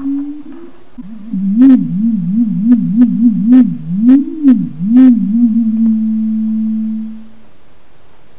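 A single low electronic note from a homemade loudspeaker, a coil and neodymium magnets on a plastic recycling bin driven by a signal generator. Its pitch slides up and down about twice a second as the frequency is varied, with a series of sharp clicks, then holds steady and fades out near the end.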